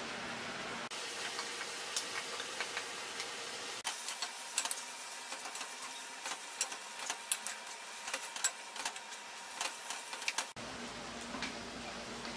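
Pork and liver frying in oil in a wok: a steady sizzle with many short clicks and scrapes from a wooden spatula against the pan as the meat is stirred. The sound changes abruptly a few times.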